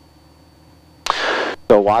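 Faint steady low drone of a Cessna's piston engine heard through the headset intercom. About a second in, a half-second rush of breath noise hits a headset boom microphone.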